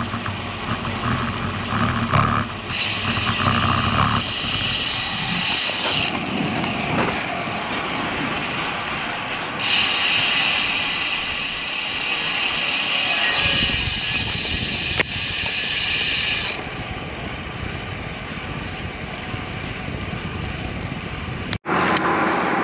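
Tyre and wind noise of a road bike rolling on asphalt, heard from a camera mounted on the bike. There are two stretches of rear freehub ticking as the rider coasts: one from about three to six seconds in, and a longer one from about ten to sixteen seconds.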